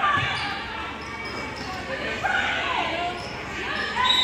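A basketball being dribbled on a gym floor, with voices calling out in the large gym.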